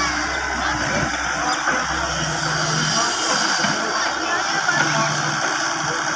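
Hitachi EX100 crawler excavator's diesel engine running with its hydraulics working as it tips a bucket of soil and swings its arm back down. A low hum under the engine eases about two and a half seconds in.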